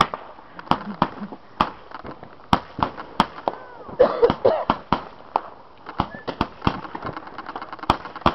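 Consumer fireworks going off: an irregular series of sharp cracks and pops, several close together around four seconds in.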